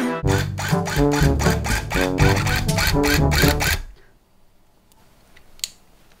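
Background music with a steady beat that cuts off suddenly about four seconds in. It leaves quiet room tone with one faint click near the end.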